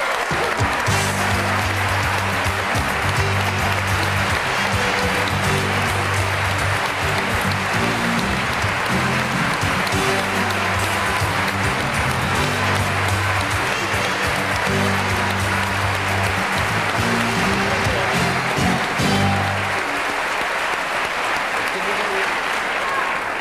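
Studio audience applauding steadily over entrance music with a pulsing bass line; the music stops about two seconds before the end while the applause carries on.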